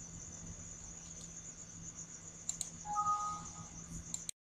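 Crickets chirping in a steady, high, pulsing trill over a faint low hum, with a brief two-note tone about three seconds in.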